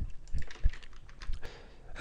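Computer keyboard typing: a quick run of faint key clicks as a short name is typed in, thinning out toward the end.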